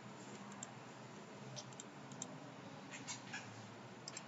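Several faint computer mouse clicks over a steady low hum of room and microphone noise.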